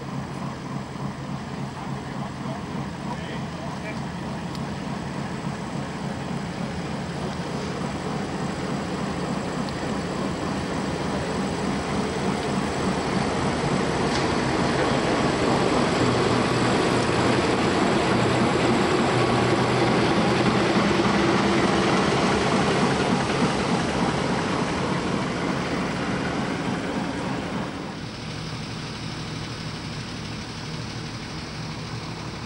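Diesel engine of the 1936 Frichs-built locomotive OHJ 40 running as it moves slowly past, growing louder to a peak about halfway through and then fading. Near the end it gives way to a quieter, steady engine hum.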